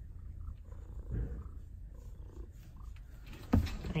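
Domestic cat purring, a steady low rumble, while being stroked around the head; a brief knock near the end.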